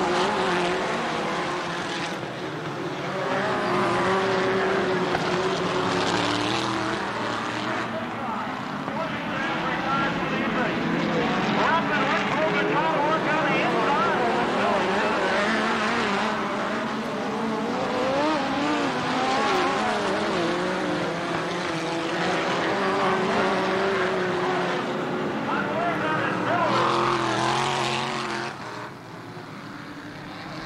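Several midget race cars' engines running at racing speed on a dirt oval, their pitch rising and falling as they lap and pass. The sound drops somewhat shortly before the end, as a car spins out.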